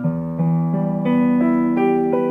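Piano playing a broken E minor chord: a low E is struck, then the chord's notes are played one at a time, about three a second. The sustain pedal is held down, so the notes ring on together.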